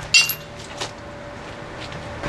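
Small steel motor-mount pieces clinking together as they are handled and set in place: one sharp ringing clink just after the start, then a couple of light taps.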